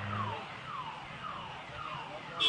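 An alarm-like electronic tone sweeping down in pitch over and over, about twice a second. A steady low hum under it stops shortly after the start.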